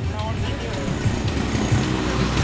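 Street traffic noise, dominated by the low engine rumble of a box truck driving slowly past close by.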